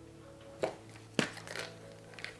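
Two short clicks or knocks, a little over half a second apart, from plastic supplement bottles being handled on a countertop, over faint steady tones.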